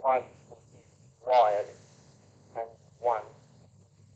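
Voice transmission from an AllStar link node, received on 434.550 MHz FM by an Icom IC-705 and heard from the radio: a few short spoken bursts over a steady low hum.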